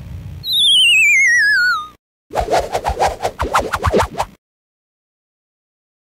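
A falling whistle sound effect, one thin tone sliding down with a fast wobble for about a second and a half. It is followed by about two seconds of rapid, choppy pulses that stop suddenly.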